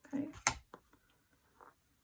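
A small clear acrylic quilting ruler set down on the tabletop with one sharp click, followed by a smaller tick and faint rustling of fabric under the hands.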